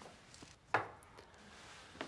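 A single sharp knock a little before the middle, with a few fainter clicks and taps around it.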